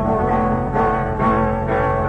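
Guitar playing the accompaniment of a Sardinian cantu a chitarra in the 're' mode, with plucked chords struck about three times over sustained notes. The sound is the dull, narrow sound of an old restored recording.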